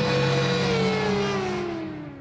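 Motorcycle engine running, its pitch dropping steadily from a little under a second in as it passes and moves away, fading out near the end.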